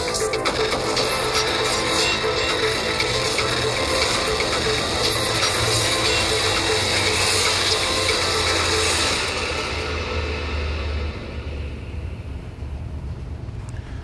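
Intro music with mechanical gear sound effects: clicking, ratcheting cogs over a low rumble. It fades out gradually over the last few seconds.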